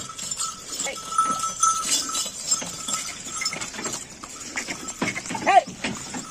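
Heavily loaded Ongole bullock cart moving along a dirt track: hooves and the rattle of the wooden cart, with a short rising-then-falling call about five and a half seconds in.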